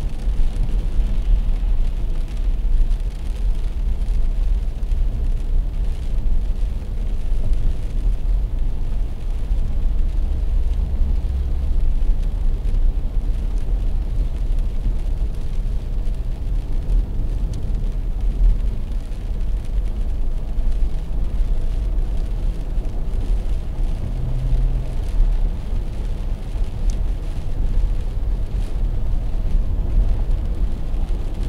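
Steady low rumble of a car cabin while driving on a wet highway: engine and tyre noise on rain-soaked pavement.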